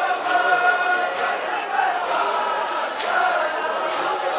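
A crowd of men chanting together in unison, many voices holding long notes. A sharp click about three seconds in.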